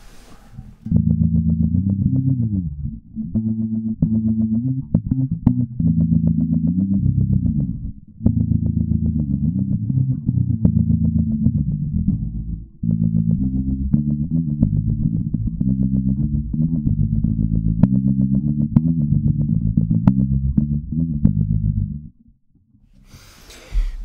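Electric bass guitar played through the Holt2 resonant lowpass filter plugin with tremolo, giving a dark bass-amp-like tone with almost nothing above the low mids. A melodic line of notes starts about a second in, pauses briefly in the middle, and stops a couple of seconds before the end.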